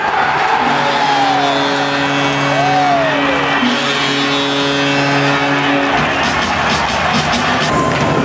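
Ice hockey arena crowd cheering a goal, with a loud held musical chord over it for about five seconds, then the chord stops and the crowd noise carries on.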